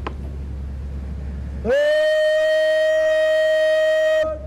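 A bugle sounds one long note, scooping up into pitch a little under two seconds in and then held steady for over two seconds.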